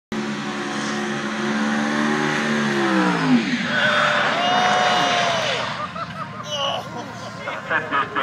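Drag car doing a burnout: the engine is held at high revs, its note drops about three seconds in, then the tyres squeal through a noisy stretch before the sound fades near six seconds.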